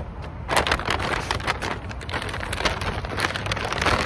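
Paper takeout bag crinkling and rustling as it is handled, a dense run of small crackles.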